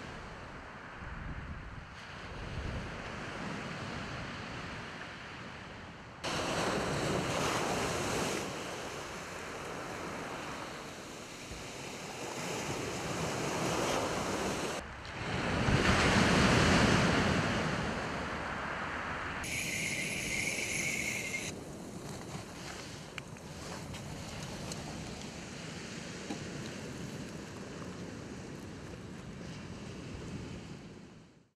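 Surf washing on a shingle beach with wind buffeting the microphone, a steady rushing that swells louder with the waves, most of all about halfway through.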